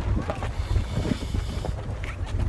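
Wind buffeting the phone's microphone on a ferry's open deck: a constant low rumble, with a steadier hiss through the middle.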